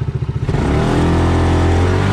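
A side-by-side off-road vehicle's engine pulling away: its evenly pulsing idle rises in pitch about half a second in and settles into a steady, louder run as the vehicle accelerates.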